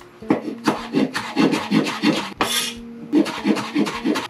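Cleaver-style kitchen knife chopping an onion on a wooden cutting board: a rapid run of sharp knocks, about five a second, with a brief scrape about halfway through.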